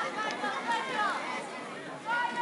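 Indistinct chatter: people talking off-microphone, with no clear words.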